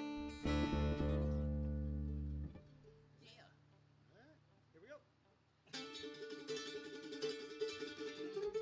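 Bluegrass string band of banjo, acoustic guitar and upright bass: a loud ringing chord over a deep bass note that cuts off after about two and a half seconds, then a quiet gap with faint voices, then quick picking on several strings coming in about two seconds before the end.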